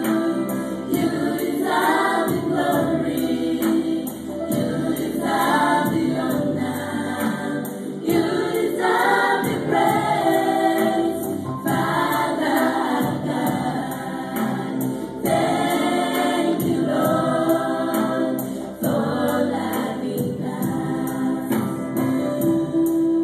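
Gospel choir music: many voices singing together over a steady percussion beat.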